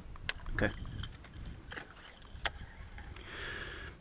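Faint handling noise in an aluminium boat: a few scattered sharp clicks and light knocks, with a short soft hiss near the end.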